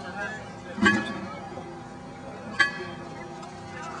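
Shovels working soil into a tree-planting hole, with two sharp clinks of a blade that ring briefly, one about a second in and one about two and a half seconds in.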